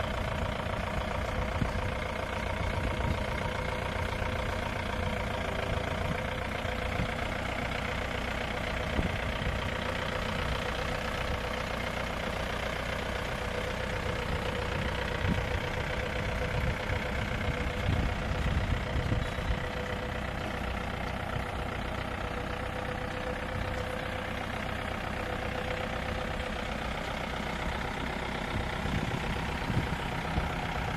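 Open jeep's engine running steadily at low speed, a continuous low rumble.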